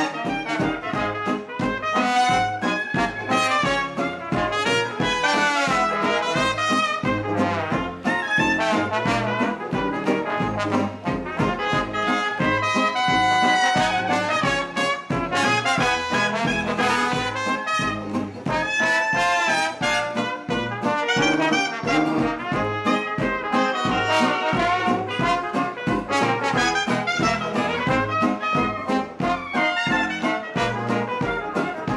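Traditional New Orleans jazz band playing live: cornet, clarinet and trombone improvising together over sousaphone, guitar, banjo and drums keeping a steady beat.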